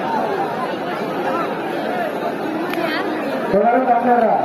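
Large crowd of spectators talking and calling out at once, many voices overlapping; louder shouts rise near the end.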